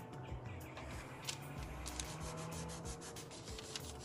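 Hands rubbing over a paper towel laid on a painted leaf on a t-shirt: soft, irregular scratchy rubbing strokes that press the leaf's paint into the fabric to make a leaf print.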